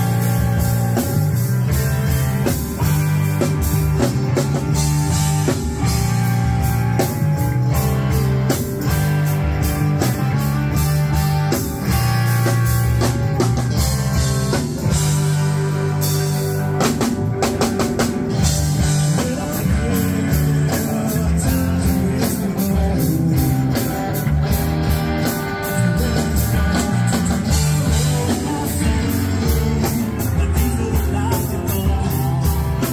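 Live rock band playing loudly through a PA: electric guitars, bass and a drum kit keeping a steady beat.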